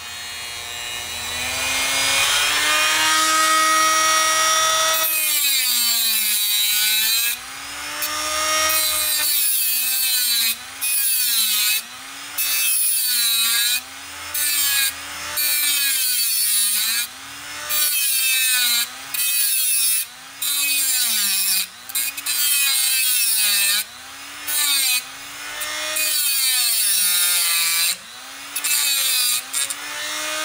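Dremel rotary tool with an abrasive cut-off wheel grinding through a metal stop on a floppy drive chassis. Its high whine climbs over the first few seconds. From about five seconds in it sags and recovers in pitch roughly once a second as the wheel is pressed in and eased off, and the hissing grind cuts out briefly each time the wheel lifts.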